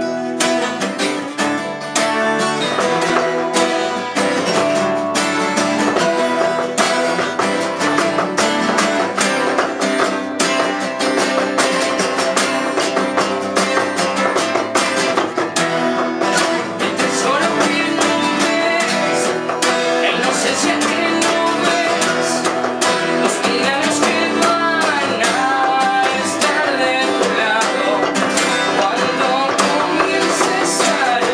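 Three acoustic guitars strummed together in a steady, driving rhythm, with a voice singing over them.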